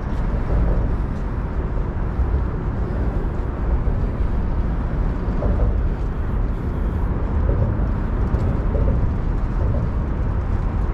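Steady low rumble of traffic on the Manhattan Bridge, mixed with wind buffeting the microphone on the open bridge walkway.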